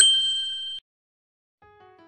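A single bright bell-like ding, a title-card sound effect, rings for under a second and is cut off sharply, leaving silence. Soft music begins faintly near the end.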